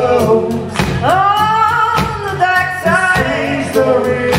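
Live blues band playing: electric guitar, electric bass and drum kit under sung vocals. About a second in, a long sung note slides up and is held.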